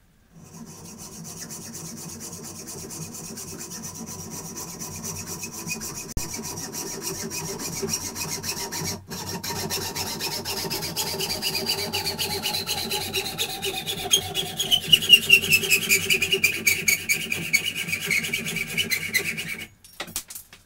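A metal tube clamped in a bench vise being worked by hand with quick back-and-forth strokes, the tube ringing with a tone that slides steadily lower through the second half. The strokes grow louder toward the end and stop suddenly just before it.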